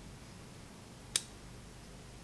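A single sharp metal click about a second in from the small parts of a Colt Mustang .380 pistol. It comes as the hammer is wiggled in the frame to line up the pin.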